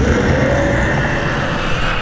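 A loud, steady rumble with a hissing top end, a trailer sound-design effect.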